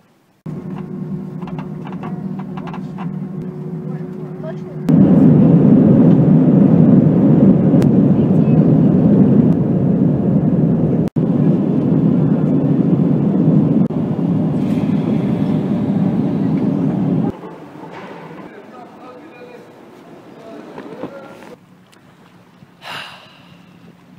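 Steady low roar of airliner jet engines heard from inside the cabin, the loudest sound here, cutting off suddenly near the end. Before it comes a quieter steady hum with a faint tone.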